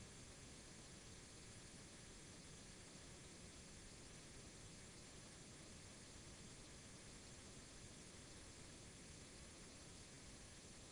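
Near silence: a steady faint hiss of room tone, with no distinct events.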